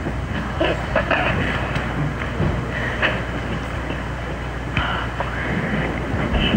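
A steady low rumble and noise haze, with scattered small knocks and faint murmuring voices.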